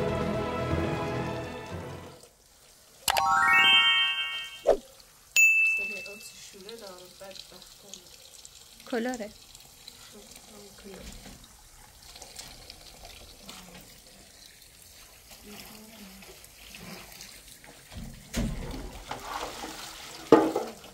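Background music fades out over the first two seconds, followed by a short rising chime and a single high ding. After that, quieter sounds of tap water running from a hose into a basin and splashing as laundry is washed by hand.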